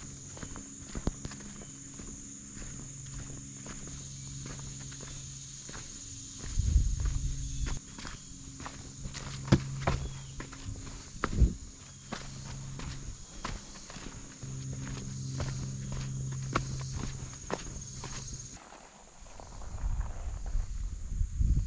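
A hiker's footsteps on a dirt trail with roots and dry leaf litter: irregular crunching and scuffing steps, with a steady high-pitched whine behind them that stops shortly before the end.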